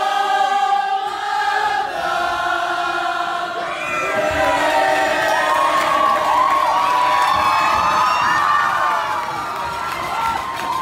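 A crowd of people singing together, turning about halfway through into a mass of cheering and shouting voices.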